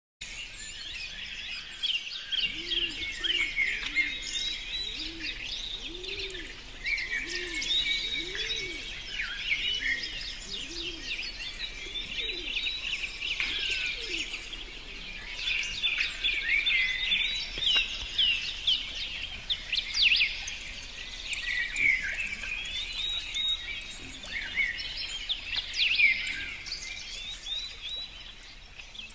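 Several birds singing and chirping together in a busy outdoor chorus. A lower call repeats about once a second for the first ten seconds or so.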